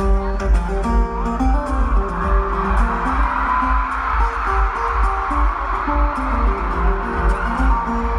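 Acoustic guitar played live through an arena PA, picked notes changing over a steady low thumping beat, as heard from the stands.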